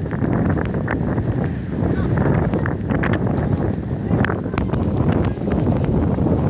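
Wind buffeting the microphone, a loud, steady low rumble, with scattered indistinct voices and short knocks over it.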